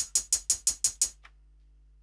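A single programmed hi-hat sample looping in a trap beat, ticking evenly about six times a second, then stopping about a second in when playback halts.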